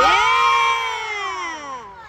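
A spectator's single long, high-pitched cheer, loud and close. It leaps up in pitch at the start, then slides slowly down and fades over about two seconds.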